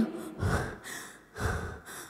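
A woman panting hard and close to the microphone, two heavy breaths about a second apart, as an imitation of being out of breath.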